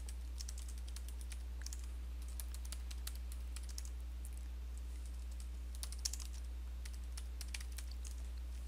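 Typing on a computer keyboard: quick, irregular clusters of light key clicks with a short lull around the middle. A steady low electrical hum runs underneath.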